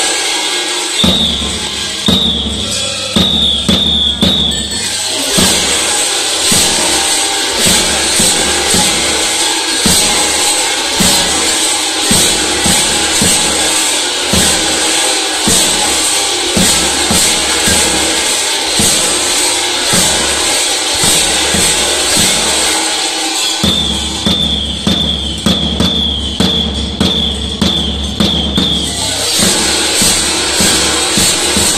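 Two tapan drums beat a steady dance rhythm under the continuous jangling clang of many large kukeri bells, shaken as the costumed dancers jump in step. A high wavering tone sounds over them in the first few seconds and again near the end.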